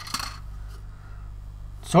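A plastic model-kit sprue being picked up and handled: a short clatter of hard plastic just after the start, then faint handling noise.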